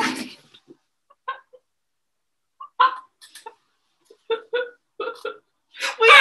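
A girl's squeaky, wheezing "windshield laugh": a string of short, pitched squeaks broken by short silences.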